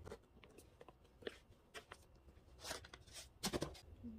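Faint rustling and scraping of an Air Jordan 6 sneaker being handled as its laces are loosened, with a cluster of louder rustles about three and a half seconds in.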